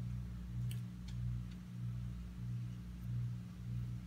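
Washing machine running in the background: a low hum that swells and fades evenly, about one and a half times a second, with a few faint light clicks in the first couple of seconds.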